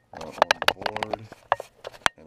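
A quick, irregular run of sharp clicks and knocks, with a short low murmur of a man's voice in the first second.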